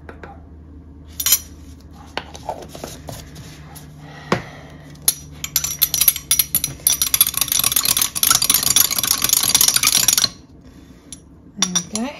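A metal spoon stirring dye powder into water in a small glass jar, clinking rapidly against the glass for about five seconds before stopping suddenly. Before this come a few single clinks as the spoon takes up the powder. The stirring dissolves extra fibre-reactive dye to strengthen a too-pale dye solution.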